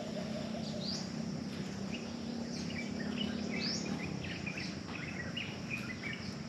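Birds in tropical forest chirping in many short, quick rising notes, busiest in the second half, over a steady low hum and a faint background hiss.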